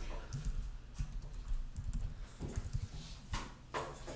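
Typing on a computer keyboard: a few irregular keystrokes and clicks, with a pair of louder ones near the end.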